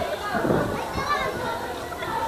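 Indistinct, low-level talk: voices too faint or muffled to make out, with no distinct non-speech sound.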